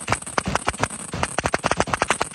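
Fireworks firing from the ground in a rapid, continuous string of sharp bangs, about ten a second.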